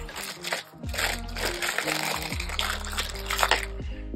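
Background music with a steady low bass and held notes, over light rustling and small clicks as a plastic bag and keychains are handled.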